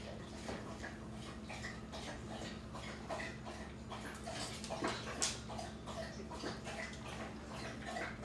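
A dog whining faintly several times in short whimpers.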